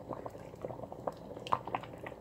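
Thick tomato purée boiling in an open pot as it reduces, its large bubbles bursting with irregular pops and plops. The loudest pop comes about one and a half seconds in.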